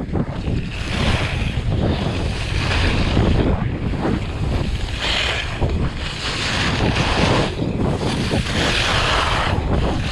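Wind rushing over the microphone of a skier's camera at speed, with the scraping hiss of skis carving on hard-packed snow, swelling about every two seconds as the skier turns.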